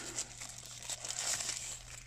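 Thin plastic packaging bag crinkling irregularly as it is handled and pulled back.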